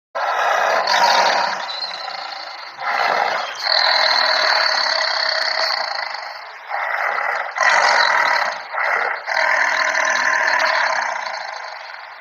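Tiger growling and roaring in a run of long, harsh calls broken by short pauses, with little deep bass.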